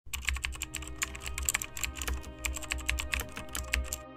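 Rapid, irregular keystroke clicks of typing, a typing sound effect as on-screen text is written out, over a low steady hum.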